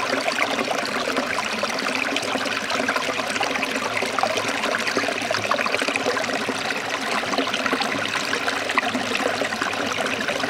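A small stream of water running steadily over rocks, a continuous trickling, splashing flow.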